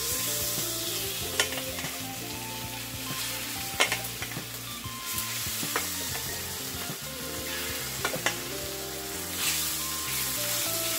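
Thinly sliced seasoned flank steak sizzling in hot oil in a cast-iron skillet, the sizzle starting abruptly as the beef hits the pan. Metal tongs click against the pan a few times as the beef is spread out.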